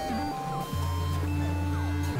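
Experimental electronic synthesizer music made of overlapping held tones. A low bass note enters just under a second in and holds almost to the end, with a few short falling glides above it.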